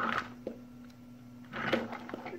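A few light clicks and knocks from plastic phone holders being handled on a shelf, over a faint steady hum.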